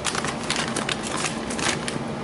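Handling noise of packaged items and cords being put back into a plastic storage basket: a quick run of small clicks, rattles and crinkles of packaging.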